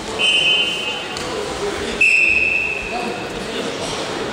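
Two referee's whistle blasts, each about a second long: a shorter one just after the start and a louder one about two seconds in.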